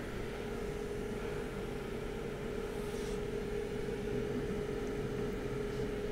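Steady hum of a small fan or blower motor: one constant tone over a soft even hiss.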